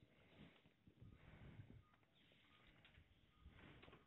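Near silence: faint room tone with faint low rustling.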